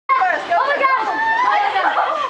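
Several people chattering at once, voices overlapping, with no single clear speaker.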